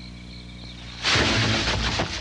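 Faint crickets chirping, cut off about a second in by a sudden loud blast of noise that carries on, like a film explosion or gunfire effect.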